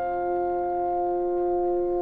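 Classical chamber-ensemble music: a soft sustained chord held steady, with no rhythm or attack.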